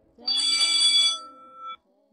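A bell ringing for about a second, then its tone dying away: a school bell sound effect signalling the end of the school day.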